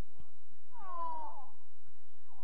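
A single high-pitched shout from a woman or girl on the pitch, drawn out for about half a second with the pitch falling, about a second in.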